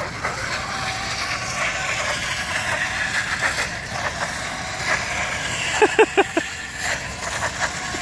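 Fat-tire electric bike's hub motor whining as its tire spins and scrubs on ice in tight circles: a steady rush of noise with a faint, wavering whine.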